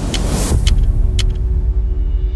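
Background music track: a rising whoosh swells over the first half second, then a deep, heavy bass comes in under sharp ticking percussion about every half second.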